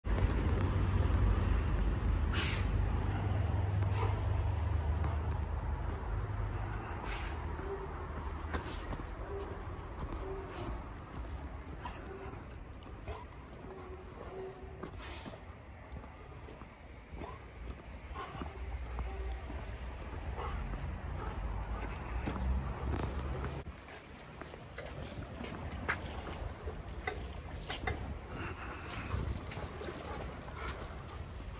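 Outdoor ambience on a walk: wind buffeting the microphone with a low rumble, heaviest at the start and again for a few seconds later on, with scattered sharp clicks and taps over it.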